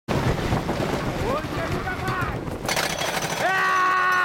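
Wooden roller coaster train climbing the lift hill, its chain lift clattering steadily. From about three and a half seconds in, a rider lets out one long drawn-out yell.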